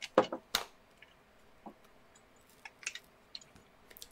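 A couple of sharp clicks just after the start, then a short cluster of lighter clicks and taps near the end, with quiet room tone between: small hard objects being handled.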